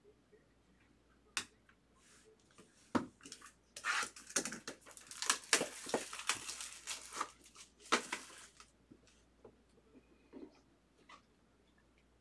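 Card packaging handled and opened by hand: a few sharp clicks, then about four seconds of dense rustling and scraping of cardboard, then lighter taps as the box comes open.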